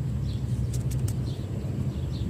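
Steady low background rumble, with faint high bird chirps and a few brief clicks about a second in.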